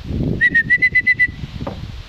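A person whistling to call a dog: a quick run of about seven short, loud whistled notes on one steady pitch, lasting about a second.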